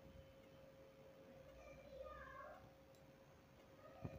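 Near silence: faint room tone with a steady low hum, and a brief faint pitched call about two seconds in.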